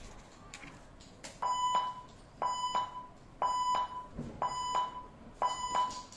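Five electronic beeps, one a second, each a steady mid-pitched tone about half a second long with a click at its start. They are typical of a backing track's count-in before the song.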